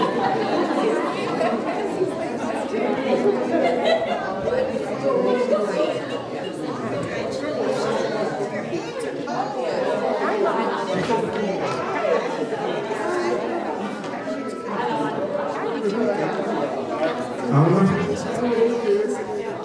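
Many people talking at once in a large hall: overlapping crowd chatter, with no single voice standing out.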